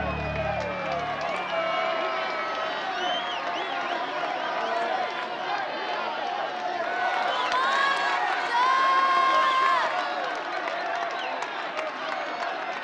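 Crowd of spectators at a baseball game shouting and cheering, many voices overlapping, swelling into long held shouts about eight to ten seconds in.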